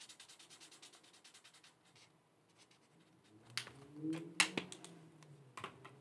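A pen scribbling rapidly on a paper tracker card, colouring in a box, for about the first second and a half. A few faint clicks of handling follow in the second half.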